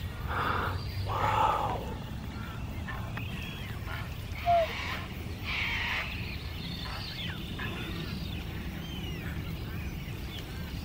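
Black swans and their cygnets calling softly at close range: two short murmuring calls in the first two seconds, one brief, clear, slightly rising note about four and a half seconds in, and faint high peeps scattered through. A steady low rumble runs underneath.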